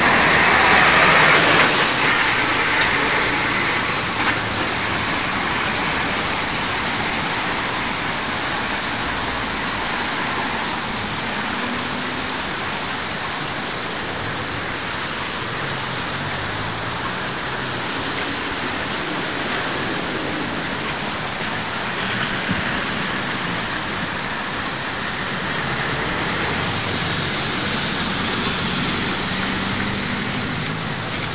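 Steady heavy rain hissing, with road traffic on wet tarmac underneath, a little louder in the first couple of seconds.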